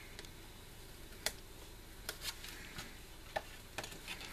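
Small scissors and card stock being handled: a few light, sharp clicks and ticks, the sharpest a little over a second in, over faint room noise.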